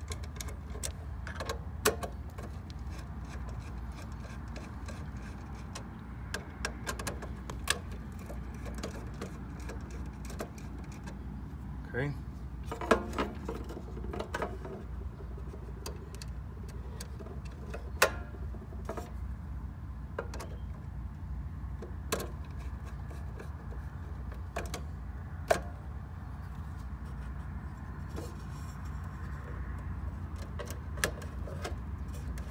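Scattered small clicks, taps and scrapes of a screwdriver and hands working the terminal screws and wiring of a pool pump timer, with a few sharper metallic clicks standing out, over a steady low background hum.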